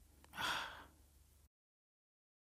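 A single short breathy sound from a person, about half a second long, followed by an abrupt cut to dead silence.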